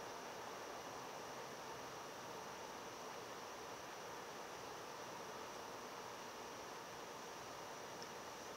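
Faint steady hiss of background noise, with no other sound.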